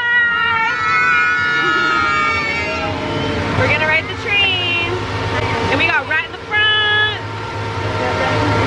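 Several children's high voices calling out long, drawn-out greetings in three stretches, over the steady low hum of a ride train's engine.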